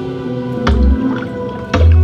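Ambient music with two water-drop sound effects about a second apart, each a low thud with a sharp splash-like click. They are the sounds an interactive light installation's glowing stepping stones play when someone steps on them, as if hopping across water.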